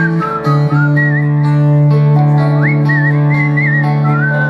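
Live band music: acoustic guitars and a held low bass note under a high whistled melody that wavers and slides up about two and a half seconds in.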